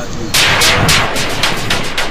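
Rapid gunfire sound effect: a fast, even string of sharp shots, about five a second, starting a third of a second in.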